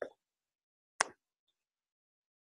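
Near silence, broken once by a single short, sharp click about a second in.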